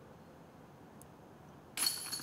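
A putted disc hitting the metal chains of a disc golf basket near the end, a sudden metallic jingle and clink as the putt is made.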